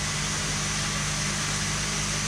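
A machine running steadily: a low, even hum under a constant hiss.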